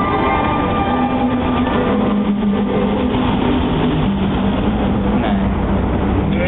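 Fountain show music on loudspeakers, long sustained low notes stepping slowly in pitch, over the steady rush of the fountain's water jets spraying.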